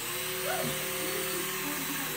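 Electronic music from dancing light-up toys: steady held synth notes, with a short rising blip about half a second in.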